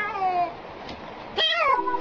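Domestic cat meowing twice: a falling meow at the start, then a short meow that rises and falls about one and a half seconds in.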